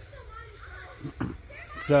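Faint children's voices in the background, with the man starting to speak near the end.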